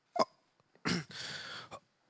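A man's short hiccup-like catch in the throat close to a microphone, then about a second later a breath drawn in, heard as a soft hiss lasting over half a second.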